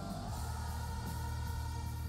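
Live rock concert audio playing at moderate level: backing singers holding a sustained vocal harmony over a steady low bass.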